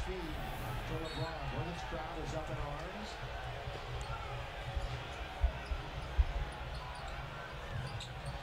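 Arena crowd murmuring, with a basketball bouncing on the hardwood court a few times about halfway through.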